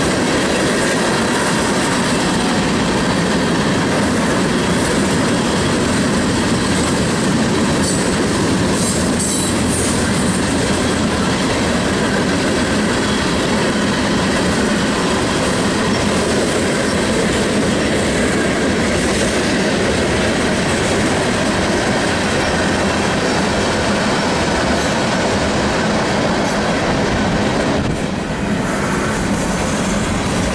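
Freight cars of a manifest train rolling past a grade crossing: a steady, loud noise of steel wheels running on the rails, dipping briefly near the end.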